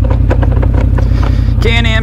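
Can-Am Outlander 650's Rotax V-twin engine idling steadily with a newly fitted CV Tech primary clutch, which runs quiet. A few light clicks from the gear selector are being worked toward park.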